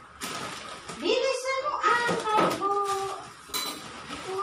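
A high-pitched voice speaks or calls out for about two seconds, starting about a second in, over a rush of watery noise and light kitchen clatter.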